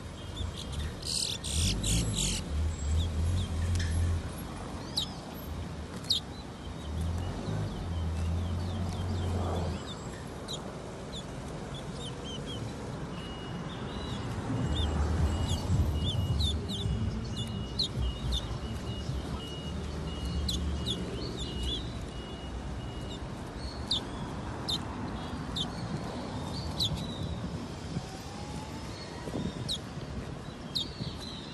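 Caged songbirds chirping, with short high calls scattered throughout and a thin, steady pulsing trill for several seconds in the middle. A low rumble comes and goes underneath.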